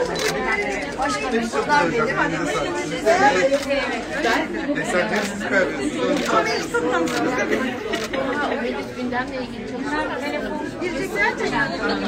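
Several people talking at once: overlapping conversational chatter with no single voice standing out.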